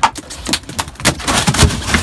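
A freshly gaffed king mackerel thrashing against a boat's fish box and deck: a rapid, irregular run of loud knocks and slaps, the heaviest near the end.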